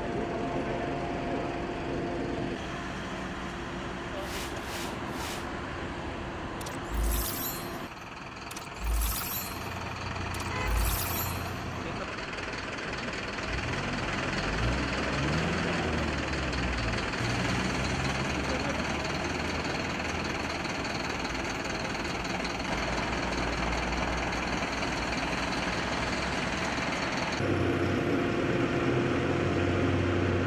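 Street traffic: trucks and cars passing, with engine pitch rising and falling as a vehicle goes by. About a third of the way in there are three short sharp hissing knocks roughly two seconds apart.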